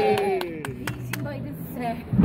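A quick run of about five sharp snaps from throw-down snap pops cracking on the pavement in the first second or so, over a child's high squeal that trails down in pitch.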